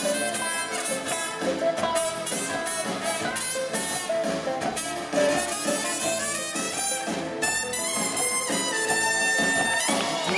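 Live band playing an instrumental break, with trumpets carrying the melody over electric guitar, upright bass and drums.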